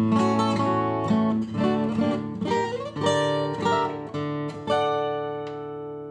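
Acoustic guitar played as a demonstration recording through an STC4021 moving-coil microphone, a run of plucked notes and chords. A last chord comes near the end and is left to ring out and fade.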